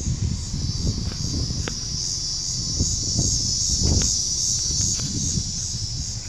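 Steady high-pitched chorus of insects, such as crickets, over a low rumble, with a couple of faint clicks.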